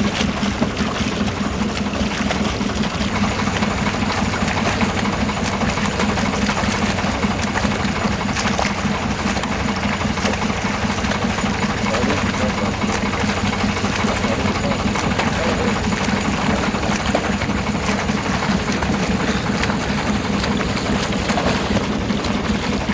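Turbulent river whitewater churning and splashing right against the camera, a loud, steady rush of water noise with a low, steady hum underneath.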